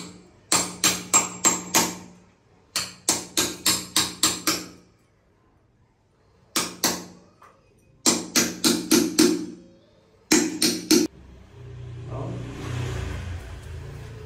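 Hammer blows on a steel floor drain and the tile and mortar around it, coming in quick bursts of two to six sharp strikes with a short metallic ring, as the drain is chipped out of the floor. In the last few seconds the strikes stop and a softer, rough low noise takes over.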